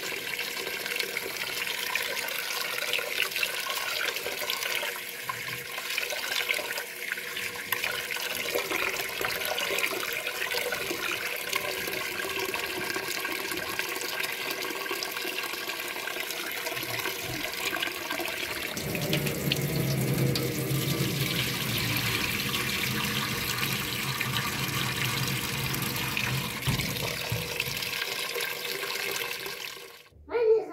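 Tap water running steadily into a steel pot of rice in a sink, rinsing the rice. A deeper tone joins the rush about two-thirds of the way through.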